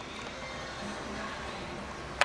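Steady, low outdoor background noise with no distinct event.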